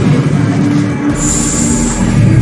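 Ambient soundtrack of an immersive installation: sustained drone tones, joined about a second in by a high, thin whistling tone over a deep rumble.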